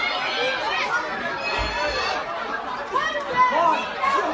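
Wrestling-show crowd chatter: many spectators talking and calling out over one another, with a brief low thump about a second and a half in.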